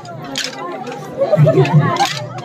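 Wooden kolatam sticks clacking together in a stick dance, with two sharp clacks near the start, over a crowd's chattering voices.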